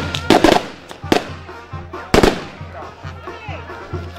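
Several sharp fireworks bangs at uneven intervals: a quick cluster near the start, another about a second in, and the loudest a little after two seconds, which rings out briefly. Wind-band music plays faintly underneath.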